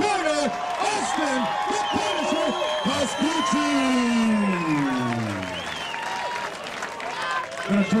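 Ring announcer's drawn-out call of the winner, ending in one long word that falls in pitch, over crowd cheering and applause.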